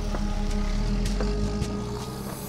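A car engine running steadily as the vehicle drives, under low, sustained background music.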